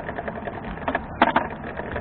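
Bicycle rattling as it rides over the cycle track: a steady rumble with irregular clicks and knocks, as picked up by a camera mounted on the bike, with a louder pair of knocks a little over a second in.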